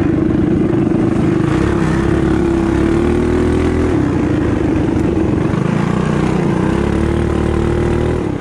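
Mini bike engine running hard while racing, heard close up from the bike: a loud, steady drone that dips and picks back up about four seconds in and again near the end as the throttle eases and opens through the turns.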